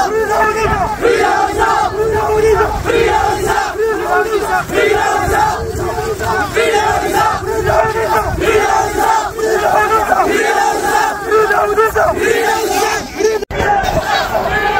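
A large crowd of protesters chanting a short slogan in unison, repeated over and over in a steady rhythm of about one phrase a second. The sound cuts out for an instant near the end.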